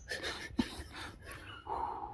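A man's stifled laughter in short breathy bursts, with a higher held squeak near the end.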